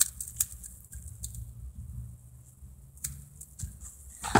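A few scattered light clicks from a toy coil spring being handled, its coils knocking together, over a low steady room hum.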